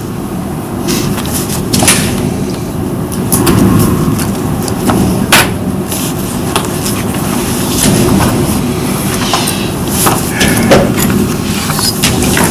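Sheets of paper being handled and shuffled at a table near the microphones, with scattered short clicks and knocks over a steady low rumble of room noise.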